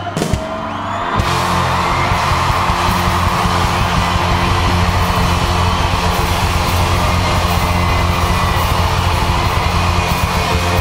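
Live rock band playing loud: drums and strummed guitar kick in together about a second in and carry on at full volume.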